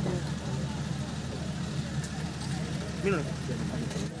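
Indistinct murmur of voices over a steady low hum.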